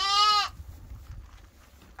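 A sheep bleats once, a short call of about half a second right at the start.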